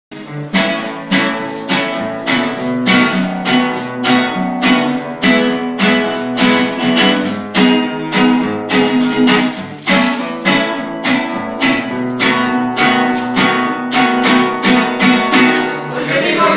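Acoustic guitars strummed together in a steady rhythm, about two strums a second, with no singing.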